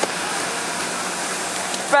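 Steady, even rushing noise with no clear source, with one small click right at the start.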